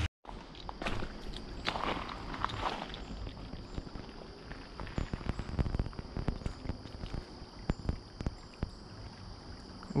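Footsteps of a person walking over the dirt, twigs and gravel of a creek bank: irregular steps and small crackles throughout.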